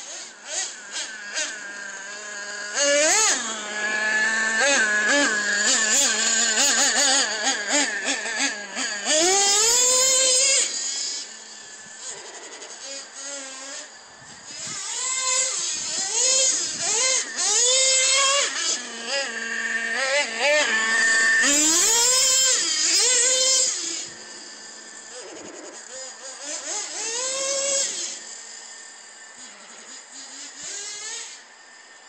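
Radio-controlled truck fitted with chains, its motor whining up and down in pitch with each burst of throttle as it drives over snow. The loudest runs come in two long spells, the first about three seconds in and the second in the middle, with quieter stretches between them and near the end.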